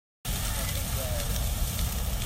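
Large open fire burning up a palm tree: a steady rushing noise with a heavy low rumble and scattered crackles, starting about a quarter of a second in.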